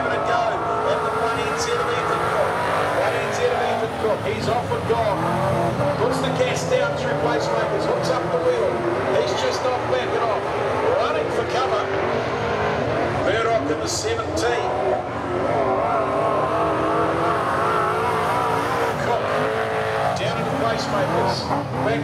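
Speedway saloon car engines revving hard on a dirt oval, pitch rising and falling as the cars race through the straights and corners, with scattered short clicks.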